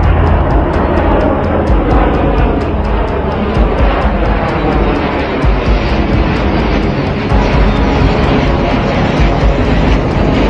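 Jet engines of a B-21 Raider stealth bomber passing overhead: a loud, steady rushing noise. It is mixed with background music that has a quick ticking beat of about four a second.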